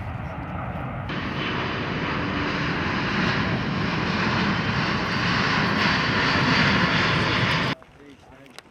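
Jet aircraft flying low overhead: a steady engine noise that jumps louder about a second in, keeps building, and cuts off abruptly near the end.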